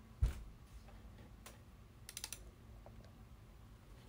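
Quiet clicks from a computer mouse and keyboard: a single click about a second and a half in, then a quick run of clicks a little after two seconds. A low thump comes just after the start.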